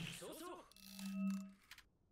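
A faint steady hum-like tone about a second long, from the low-volume soundtrack of an anime episode. A brief faint voice comes just before it.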